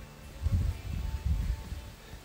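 Low, irregular rumbling noise on the microphone, starting about half a second in, over faint background music.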